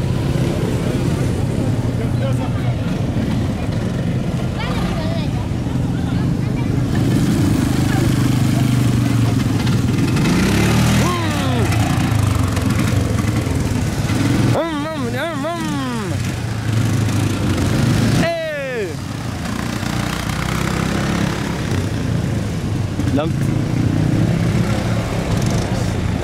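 Small vehicle engines running close by: a steady low hum through the first half, then several revs that rise and fall in pitch in the second half. Voices are heard in the background.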